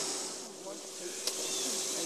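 Quiet outdoor background with a faint steady hiss and a single light click a little over a second in.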